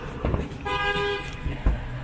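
A car horn sounds once, a single flat steady honk of about half a second starting a little over half a second in. A low thump follows near the end.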